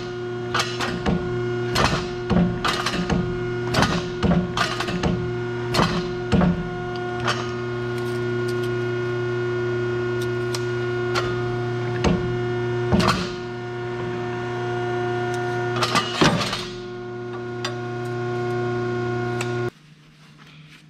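A VicRoc UB-302 hydraulic U-bolt bender's pump running with a steady hum, while a threaded rod is worked up and down in the bender with frequent sharp metal clicks and clanks. The hum cuts off suddenly just before the end.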